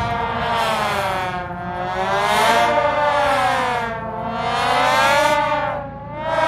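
A siren sound effect wailing, its pitch swinging slowly up and down, a full rise and fall about every two and a half seconds, as part of a marching show band's performance.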